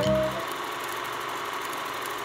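The last keyboard notes of the music end about half a second in, giving way to a steady, fast mechanical clatter of an old film projector running, laid as a sound effect under the logo.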